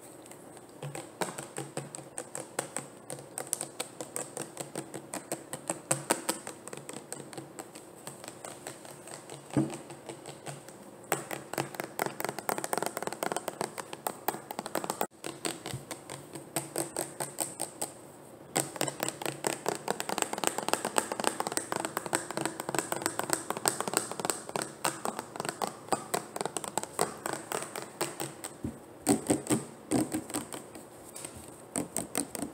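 Rapid, dense finger tapping on plastic bottles: a fast patter of small clicks that grows busier about a third of the way in, breaks off briefly, and picks up again to run fast and close.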